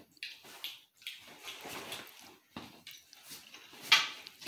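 Potato chips being bitten and crunched, an irregular crackle of short bites, with a sharp click just before the end.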